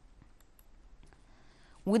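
A quiet pause holding a few faint clicks, then a woman's voice starts near the end.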